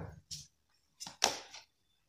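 Tarot cards being handled: a few short swishes as a card is drawn from the deck and laid on the spread, the sharpest a little over a second in.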